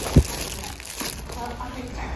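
Plastic zip-top bags crinkling as they are handled and put back in a bin, with one low thump just after the start.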